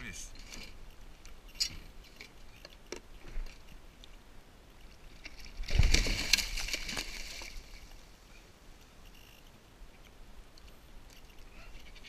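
Heavy splashing at the water's surface right beside a kayak, starting about six seconds in and dying away over a second or two, from a hooked fish thrashing alongside. Light knocks and clicks on the hull and gear come before and after it.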